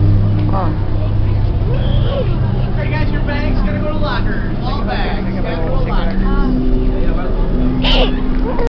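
Scattered voices of people nearby over a steady low hum.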